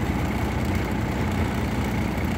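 Diesel semi-truck engine idling steadily, a low even rumble heard from inside the cab.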